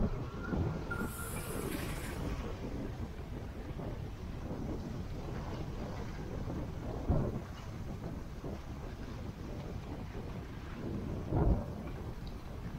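Wind rumbling on the microphone of a camera moving fast downhill, with the steady scrape of sliding over packed snow. A few louder bumps come about seven seconds in and again near the end.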